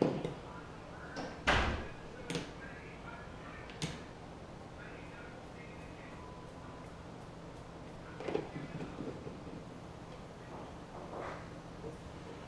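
Plastic clicks and knocks as a battery-powered bait aerator pump is handled and its battery is turned to make contact, the sharpest knock about a second and a half in, over a faint steady low hum. The pump will not start reliably because of a weak connection at its battery terminals.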